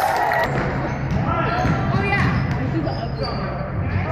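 Basketball bouncing on a hardwood gym floor during a game, with a few short knocks near the start, over the background voices of players and spectators.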